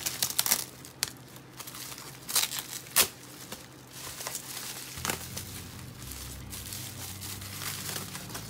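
Bubble wrap and paper wrapping crinkling and rustling in the hands as they are unwrapped, in irregular crackles with a sharp snap about three seconds in.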